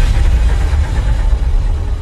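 A loud, dense wall of noisy sound with a heavy low rumble in a film background-score track, cutting off suddenly just at the end.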